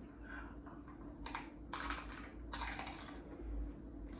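Hard-shell taco being bitten and chewed, the fried corn shell crunching in about three crisp bursts in the second half.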